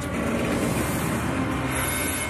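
Steady rushing noise under a faint low hum, as water ballast pours out of the airship's tanks.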